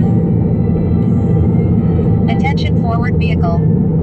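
Steady low road and engine rumble inside a car cabin while cruising at freeway speed. A brief stretch of voice comes in a little past halfway.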